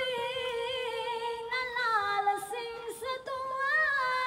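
A woman singing into a microphone, holding long sustained notes that waver slowly and then step lower partway through.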